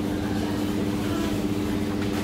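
Steady low hum of supermarket machinery, holding one constant tone throughout.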